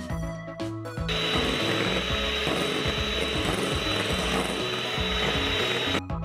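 Electric hand mixer running at speed, its twin beaters whipping egg whites in a glass bowl. It starts about a second in as a steady whir and cuts off at the very end.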